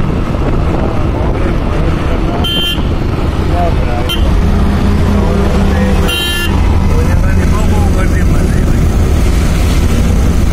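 Steady engine and road rumble heard from inside a moving vehicle on a highway, with two short horn toots, about two and a half seconds in and again about six seconds in.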